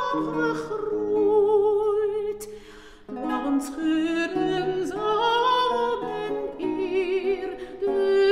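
Mezzo-soprano singing a Dutch art song with wide vibrato, accompanied by a lute. The music falls away briefly about two and a half seconds in, then the voice comes back in.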